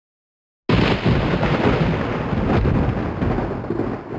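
A loud rumbling crash, like a sound effect laid over a title card, starting suddenly about two-thirds of a second in and slowly fading away.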